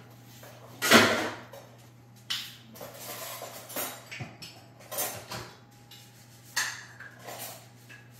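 Kitchen handling noises: a string of short clattering, rustling sounds, the loudest about a second in, over a steady low hum.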